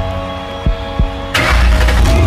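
A simulated heartbeat of deep double thumps, about one beat a second, over sustained synth music; about 1.3 seconds in a whoosh hits and a Ford Mustang's engine rumble starts up and keeps going low and loud.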